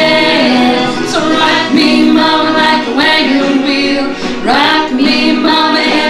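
Two women singing together without words, holding long notes with sliding pitch changes about a second in and again past the middle.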